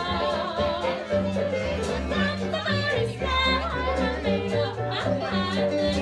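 Live hot jazz band playing: a woman sings the melody with a wavering, vibrato-rich voice over clarinet and the band, with a steady bass line underneath.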